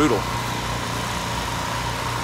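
An engine running steadily at constant speed, a low hum with a thin steady whine above it.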